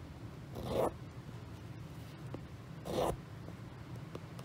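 Cotton embroidery thread drawn through aida cross-stitch fabric with a short swish, twice, about a second in and again about three seconds in.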